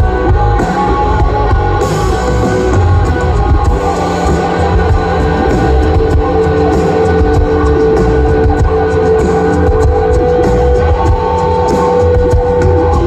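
Post-punk band playing an instrumental passage live: electric guitars, bass and drum kit, loud and steady, with a long held note ringing over it from about halfway through.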